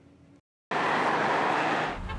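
Freeway traffic: a steady rush of tyre and engine noise from passing vehicles, cutting in suddenly about two-thirds of a second in after a moment of dead silence.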